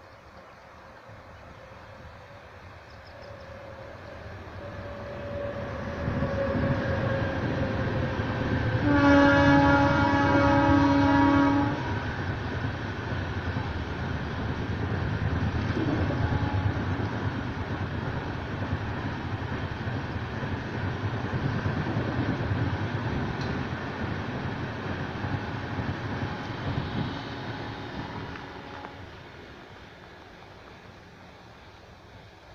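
Express train hauled by a WAP7 electric locomotive passing: its rumble builds as it approaches, and the horn sounds for about three seconds around nine seconds in. The coaches then run past with a steady rumble and wheel clatter that fades near the end.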